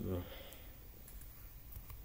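A few faint clicks on a computer in the second half, as the presentation software is switched into full-screen slideshow mode.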